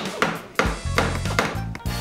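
Hammer lightly tapping nails into hardwood wine-rack frames: several sharp taps, with background music coming in about halfway through.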